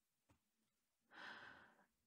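Near silence in a pause of a woman's audiobook reading, with a faint, soft in-breath of the reader a little after one second in.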